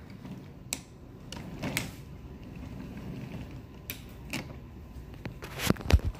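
Handling noise: a few light clicks and knocks over a faint low rumble, with the loudest two close together near the end.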